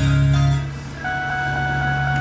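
Music playing from the 2006 Ford Five Hundred's AM/FM/CD radio, tuned to an FM station. The level dips about half a second in as the volume knob is turned, then holds steady.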